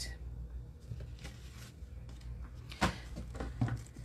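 Small handling sounds of paper crafting on a tabletop: paper and supplies shifting, with a few soft knocks and a sharper tap about three seconds in, over a low steady hum.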